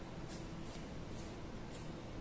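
Faint swishes and rustles of a rubber power cord being uncoiled by hand, about one every half second, over low room noise.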